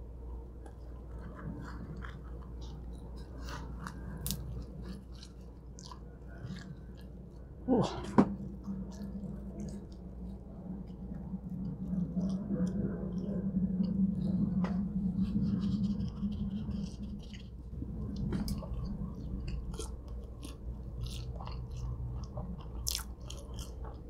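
Close-miked chewing of thick-crust cheese pizza, with wet mouth clicks and smacks and one sharp, louder bite or smack about eight seconds in. Through the middle, for several seconds, a low steady hum of the eater's voice runs under the chewing.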